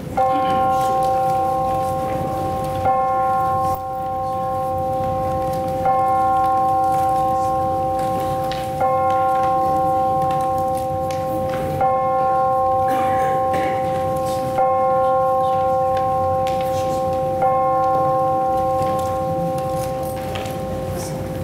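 A church bell tolling seven times, one stroke about every three seconds, each stroke the same pitch and ringing on until the next.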